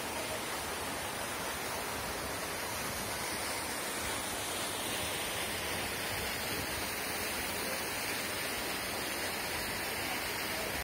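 Steady rushing of a mountain waterfall and its stream, an even roar of water with no breaks.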